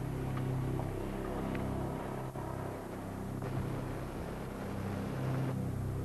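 Powerful sport motorcycle's engine running at speed, a steady low drone.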